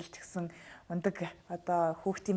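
Speech only: a person talking in conversation, soft and breathy in the first second, then in short voiced phrases.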